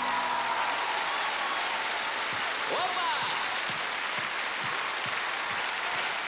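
Large concert-hall audience applauding steadily, with a brief shout from the crowd rising over the clapping about three seconds in.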